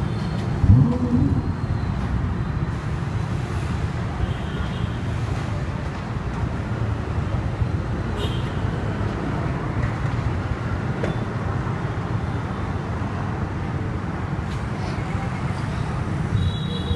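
Steady low rumble of idling engines and street traffic, with a short rising engine rev about a second in.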